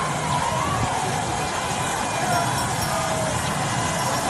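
A crowd singing and talking over a steady wash of outdoor noise, one wavering sung line standing out above it.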